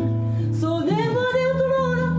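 A woman singing fado with a nylon-string classical guitar. The guitar picks notes, and about a second in she starts one long held note that rises and bends in pitch.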